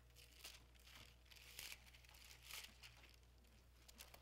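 Near silence: faint, scattered rustles of Bible pages being turned, over a low steady hum.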